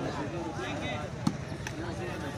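A volleyball struck by hand: one sharp smack a little past halfway, over the voices of a crowd.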